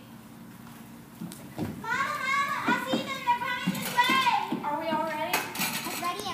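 Children's high voices talking and calling out together, starting about two seconds in after a quieter stretch, with a brief knock near the end.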